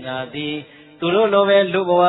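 A Buddhist monk's voice intoning in a sing-song, chant-like delivery, the pitch held level for stretches and gliding between them, with a brief pause just past halfway.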